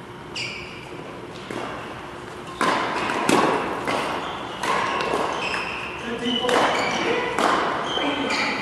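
Badminton doubles rally: sharp racket strikes on the shuttlecock and high squeaks of court shoes on the synthetic court mat, echoing in a large hall. The strikes come thick from about two and a half seconds in.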